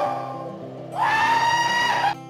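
A man's long, held whooping yell over background music: one yell trails off at the start, and a second starts about a second in and breaks off suddenly.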